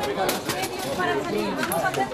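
Crowd of reporters and onlookers chattering, many voices overlapping, with a few sharp clicks among them.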